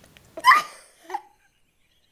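A girl's short, sharp vocal outburst about half a second in, followed by a second, shorter one.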